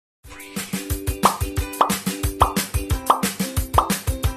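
Upbeat intro music with a steady drum beat, starting about a quarter second in, with a short rising pitch sweep repeated about every 0.6 seconds.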